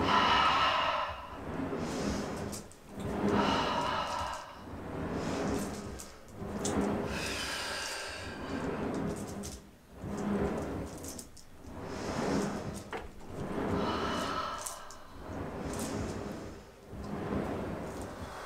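Pilates reformer carriage sliding out and back on its rails with each lunge repetition, together with breathing, swelling every one and a half to two seconds over soft background music.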